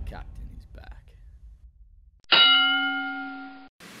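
Intro music fading out, then about two seconds in a single loud bell ding that rings for over a second, fades and cuts off.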